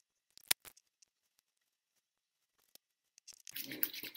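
A few sharp clicks from handling skincare products, the loudest about half a second in. Near the end, soft rubbing as cleanser is worked between the hands.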